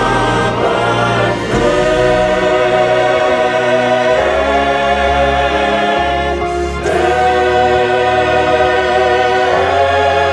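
A mixed choir of men and women singing a gospel song with accompaniment, holding long chords that change every couple of seconds.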